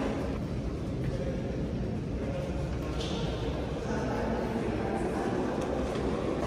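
Ambience of a large gallery hall: a low steady rumble with faint, indistinct voices in the background.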